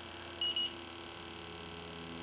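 TDS-II termite and bed bug detector giving one short, high beep about half a second in, over a faint steady low hum.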